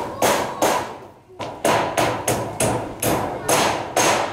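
Hammer driving nails through a corrugated metal roofing sheet into a bamboo-and-timber roof frame: a run of sharp strikes, two or three a second, each with a short metallic ring, pausing briefly about a second in.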